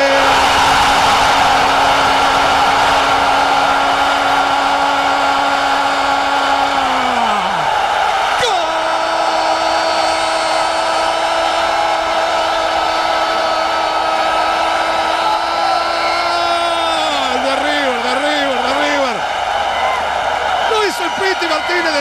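A football commentator's drawn-out goal shout in Spanish: one long held note of about seven seconds that falls away, then a second, slightly higher note held for about eight seconds that wavers up and down near the end. Under it, a stadium crowd cheering the goal.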